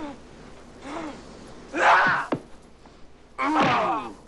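Men grunting and gasping in a hand-to-hand fight, a short grunt about every second, with a loud strained cry and a sharp thwack of a blow about halfway through and another loud cry near the end.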